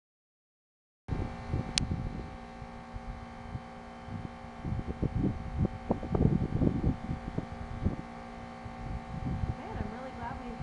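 Gusty wind from an approaching haboob buffeting the microphone in irregular low rumbles over a steady hum. The sound cuts out completely for about the first second.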